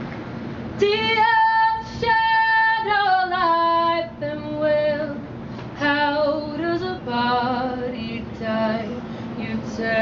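A woman singing solo a cappella: slow, held notes that slide down in pitch, starting about a second in.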